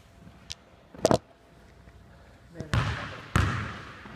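Basketball bounced on a hardwood gym floor: a few sharp bounces, the loudest in the second half, each followed by an echo in the large hall.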